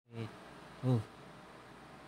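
A person's voice: a short hum and then a brief "oh" a little under a second in, over a steady faint hiss.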